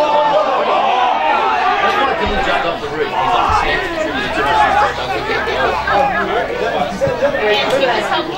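Several spectators talking over one another, a continuous babble of voices close to the microphone.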